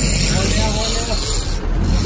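Steady rumble of a sportfishing boat's engine with wind and sea noise, and faint voices in the background.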